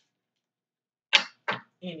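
Silence for about a second, then a woman's voice breaking in sharply and resuming speech near the end.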